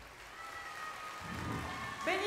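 Backing music fading to a faint held note, with a soft low swell about a second and a half in.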